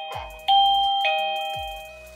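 Plug-in indoor chime unit of a Zemismart Wi-Fi video doorbell playing a two-note ding-dong, a higher note then a lower one, as it powers up after being plugged into the socket. The tail of one ding-dong is fading, then a second ding-dong strikes about half a second in and rings away by the end.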